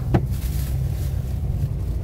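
Low, steady rumble of a car driving slowly, heard inside the cabin, with a single brief click just after the start.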